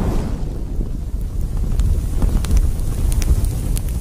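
Fire sound effect for an animated logo: a deep, steady rumble of burning flames with scattered faint crackles.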